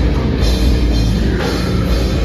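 Live rock band playing loud, with a drum kit driving it.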